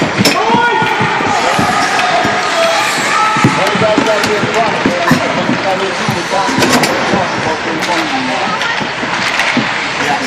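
Several voices shouting over one another in an ice rink, none of them clear words. Sharp clacks and knocks from hockey sticks and the puck, and from hits against the boards, are scattered through it.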